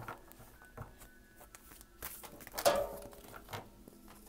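Oversized tarot cards being handled and shuffled: scattered soft rustles and taps, with one louder swish of cards about two and a half seconds in.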